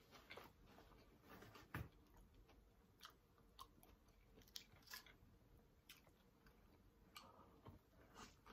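A person chewing a mouthful of fish sandwich close to the microphone: quiet chewing with scattered short wet clicks and smacks of the mouth, the sharpest a little under two seconds in.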